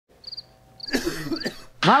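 A woman coughing twice, about half a second apart, then starting to speak. Faint high-pitched chirps sound three times in the background.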